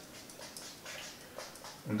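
Chalk scratching quietly on a blackboard in short strokes as an equation is written.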